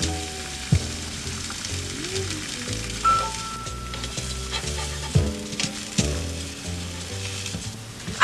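Eggs frying in a pan, a steady sizzle, with a few sharp clicks as the spatula knocks against the pan.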